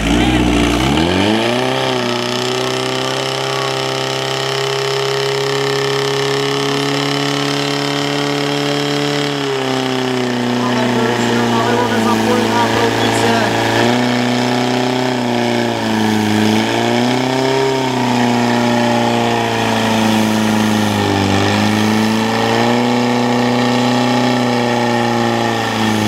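Portable fire pump's engine revving up to full speed within the first two seconds, then running hard and steady as it pumps water through the attack hoses. Its pitch drops a step about ten seconds in as it takes up the load, and sags briefly twice more later on.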